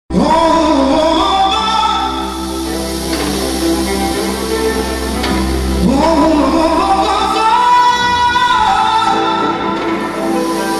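A live band playing Romanian manele on electronic keyboards, with a singer carrying an ornamented melody that wavers and slides, loudly and without a break.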